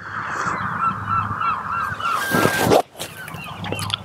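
A golf iron swung and struck off turf: a short rushing swish and a sharp strike a little under three seconds in. Over the first two seconds a rapid run of honking bird calls, about four a second, with a steady low rumble of wind throughout.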